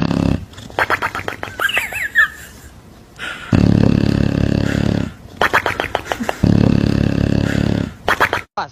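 English bulldog snoring loudly in its sleep. Two rounds of a fluttering, rattling breath, each followed by a louder, steady rumble lasting about a second and a half.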